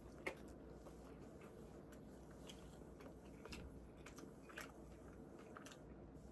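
Faint mouth sounds of a person biting into and chewing a crispy chicken sandwich, with a few soft clicks scattered through it.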